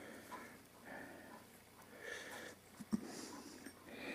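Faint breathing close to the microphone with small handling noises, and one sharp click about three seconds in.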